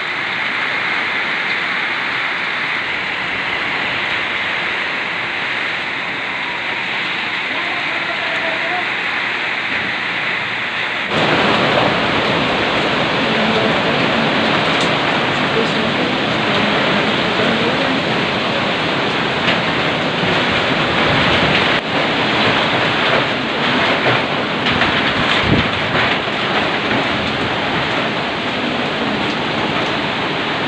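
Typhoon-force wind and heavy rain lashing a house, rain driving against a louvered jalousie window in a steady rush. About eleven seconds in it becomes suddenly louder, with scattered knocks and rattles in the second half.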